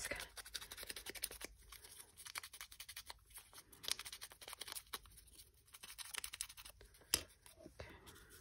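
Small paper label rubbed against the foam pad of a hand-held ink blending tool: a faint, fast, scratchy rubbing made of many tiny ticks, with one sharper click about seven seconds in.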